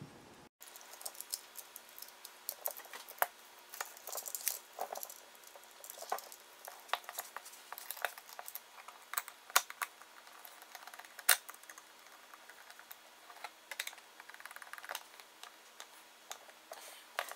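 Irregular small clicks and taps of a screwdriver and stiff wires being worked into the metal and plastic body of a 240 V NEMA 6-50 receptacle, over a faint steady low hum.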